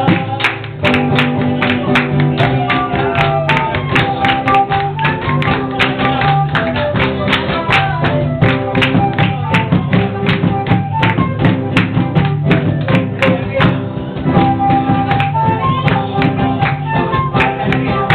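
Loud music with a steady beat.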